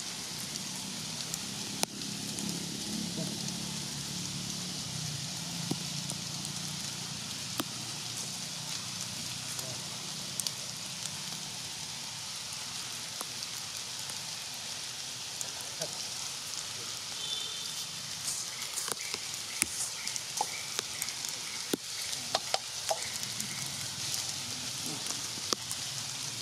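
A steady outdoor hiss, with scattered faint clicks and taps that grow more frequent in the second half.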